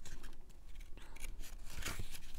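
Paper rustling and scraping in short strokes as the pages of a small oracle-card guidebook are leafed through, with a louder rustle near the end.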